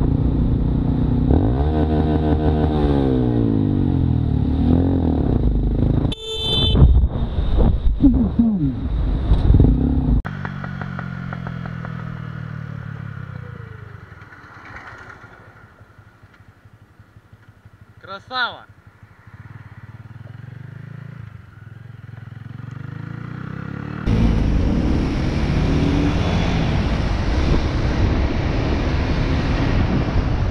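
Motorcycle engine running and accelerating, its pitch climbing through the revs, with short car horn blasts at a couple of points. A quieter stretch in the middle lets the engine sound drop away before it returns steady near the end.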